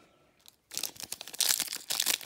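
Plastic wrapper of a Donruss basketball trading-card pack crinkling and being torn open by hand, starting about a third of the way in and running on as a dense crackle.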